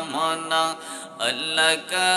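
A man's voice chanting Islamic zikir melodically into a microphone, holding long notes that glide up and down in pitch with brief breaths between phrases.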